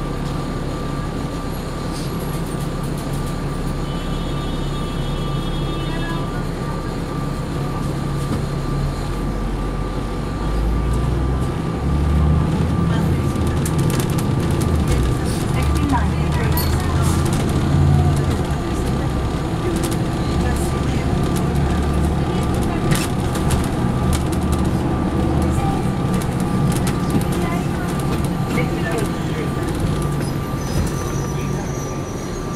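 Interior of a Neoplan USA AN459 articulated diesel transit bus: the engine idles at a stop, then grows louder and deeper as the bus pulls away about ten seconds in and keeps driving. A steady whine runs underneath throughout.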